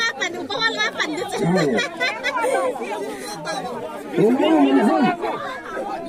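A group of people talking and calling out over one another, with one voice louder about four seconds in.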